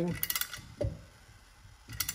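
A few short clicks of a ratcheting wrench turning the puller nut of a roller pin tool, drawing a tightly pressed-in roller pin out of a Can-Am secondary clutch. The clicks come in a quick cluster early on, then one more about a second in.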